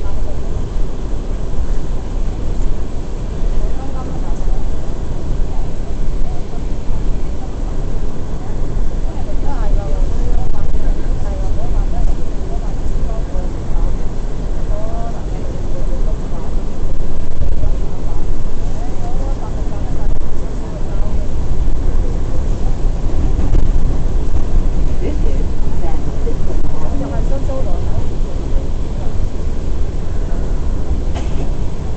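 Inside an R179 subway car in motion: loud, steady rumble of the train's wheels on the rails and its running gear, with no let-up.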